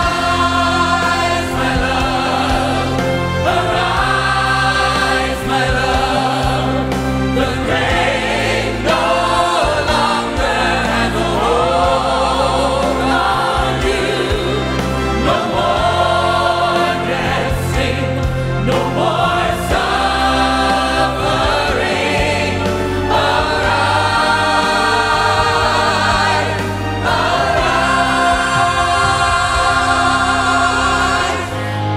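Church choir singing a gospel song over instrumental accompaniment, with held, swelling chords throughout.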